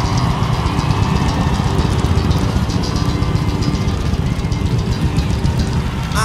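A large stadium crowd cheering and applauding, with music from the stage underneath.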